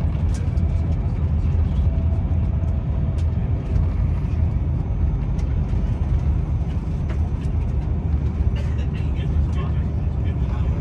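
Inside a passenger train running at speed: a steady low rumble of wheels on rails, with scattered light clicks and ticks.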